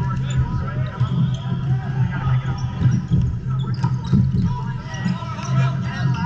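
Indoor volleyball rally on a hardwood court: sneakers squeaking, the ball being struck and bouncing, and players calling out, with the hum of a busy gym behind.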